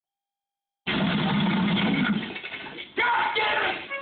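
Soundtrack of a film playing on a television: a loud, noisy commotion starts suddenly about a second in, eases off, and a second loud burst comes near the end.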